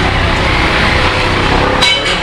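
Steady street traffic noise with a motor vehicle's engine running close by. A sharp clank with a short metallic ring comes near the end.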